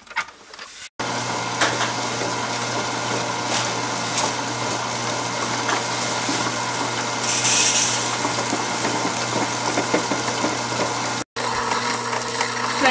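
Electric food processor running steadily, its blade grinding soaked urad dal into vada batter, with a constant motor hum under the grinding. A few light clicks come before it starts, and the run breaks briefly near the end.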